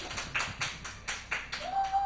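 A steady series of sharp clicks or taps, about four a second. Near the end a drawn-out voice-like sound starts, rising and then falling in pitch.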